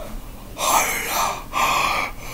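A man yawning aloud: two long, breathy, drawn-out sounds, the second beginning about halfway through.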